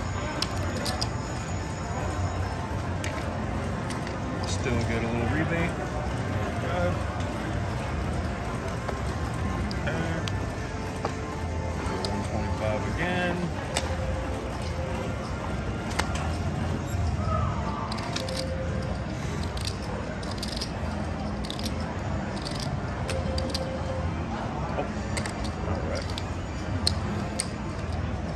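Casino floor ambience: indistinct background chatter and music, with scattered sharp clicks of casino chips being handled and set down on the table.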